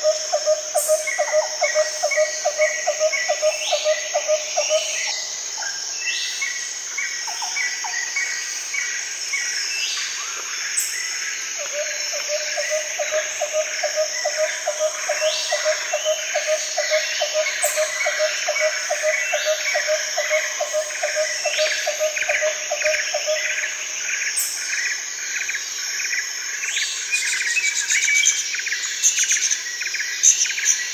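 Birds chirping and calling over a steady, high insect chorus. Short rising calls recur every few seconds, and a low, rapid run of repeated notes sounds for the first few seconds and again through the middle.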